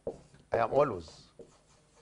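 Marker pen writing on a whiteboard, its strokes faint, with a brief spoken word, the loudest sound, about half a second in.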